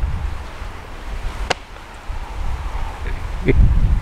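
Low wind rumble buffeting an outdoor microphone, with a single sharp click about a second and a half in and a brief voice sound near the end.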